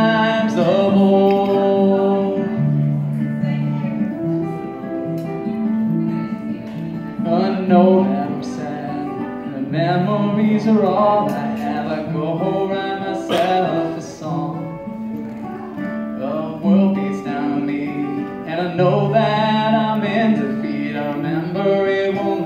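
Acoustic guitar strummed and picked in a live solo song, with a man's singing voice over it in stretches.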